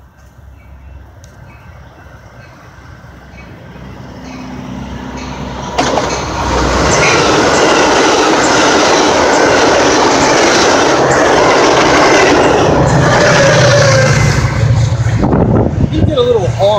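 Metra express commuter train of stainless bilevel passenger cars passing close at speed. A low rumble builds as it approaches, then about six seconds in a loud, steady rush of wheels on rail takes over and holds until it eases near the end.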